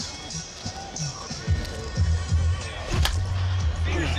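Background music with a steady beat; about three seconds in, one sharp crack of a wooden baseball bat hitting a ball in batting practice.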